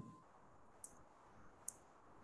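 Two short, sharp computer mouse clicks about a second apart against near silence, with a soft low thump right at the start.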